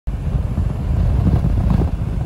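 Strong windstorm gusts buffeting the microphone: a loud, uneven low rumble.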